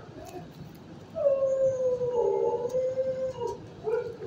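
A dog howls about a second in: one long call lasting about two seconds that falls slightly in pitch. A short bark follows near the end.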